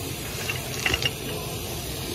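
Tap water running steadily from a bathtub faucet onto wet clothes in the tub. A few short sharp clicks come about halfway through.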